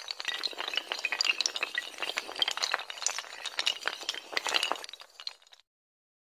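Sound effect of many domino-like tiles toppling in a chain: a dense, fast run of light clicking clatters that stops suddenly about five and a half seconds in.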